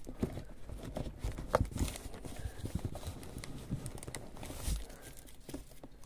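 Metal food tins being worked out of plastic shrink-wrap in a cardboard box: plastic crinkling and rustling, with scattered knocks and clicks of the tins and a thump near the end.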